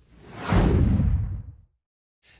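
Whoosh transition sound effect: a rush of noise that swells quickly to its loudest about half a second in, then sweeps downward and fades away.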